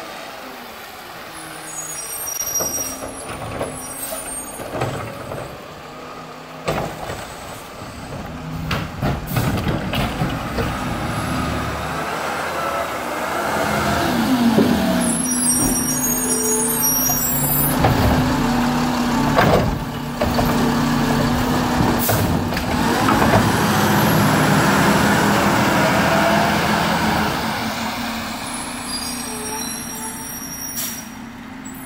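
Diesel garbage truck running as it pulls up and passes close by, then drives off, its engine loudest in the middle and fading toward the end. Its air brakes hiss three times: near the start, midway and at the end. A few sharp metallic knocks come through in between.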